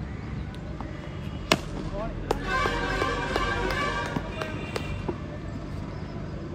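A tennis ball struck by a cricket bat: one sharp crack about a second and a half in, followed by a couple of seconds of shouting voices.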